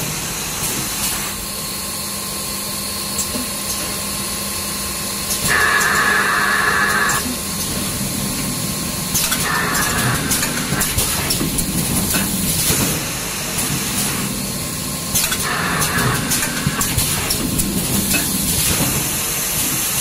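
Automatic facial tissue bundling machine running, a steady hum with frequent clicks and knocks of its moving parts. Bursts of hissing come about five, nine and fifteen seconds in, the first and last lasting over a second.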